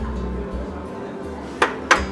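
Two sharp clinks of small earthenware tapa dishes knocking, about a quarter second apart near the end, over quiet background music.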